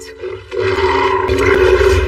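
Animated film soundtrack between lines of dialogue: held orchestral notes, then about half a second in a loud swell of score and effects with a deep low rumble under it.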